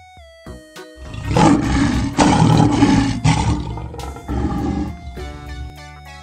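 Lion roaring, a series of rough roars that start about a second in and die away near the five-second mark, over light background music.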